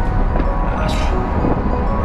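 Steady rumble of wind and road noise in an open convertible on the move with the roof down, under background music.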